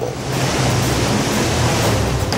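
Steady rush of surging tsunami floodwater, an even, loud noise, with a low steady hum underneath.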